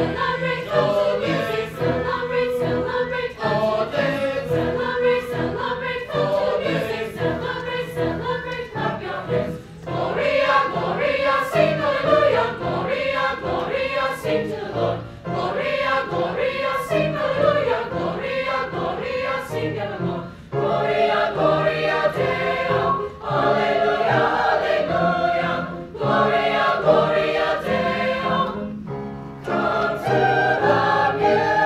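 A mixed choir of young men and women singing in phrases, accompanied by an upright piano.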